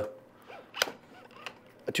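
A single sharp click a little before the middle, from the studio flash head being handled and angled on its stand; otherwise quiet room tone.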